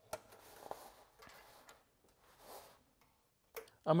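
A light click, then three soft rustling swishes of heavy canvas fabric being handled and slid out from the sewing machine.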